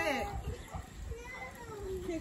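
Children's and adults' voices talking and calling, with no clear words; one voice draws out a long, falling sound in the second half.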